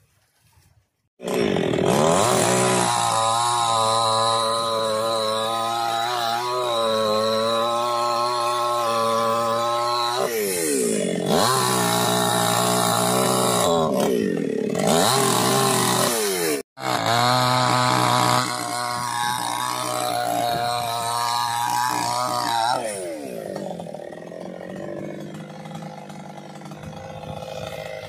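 Chainsaw engine running hard while cutting a large fallen tree, starting about a second in. Its pitch drops and climbs back a few times as it works through the wood. It cuts out briefly about two-thirds of the way through, then runs lower and quieter near the end.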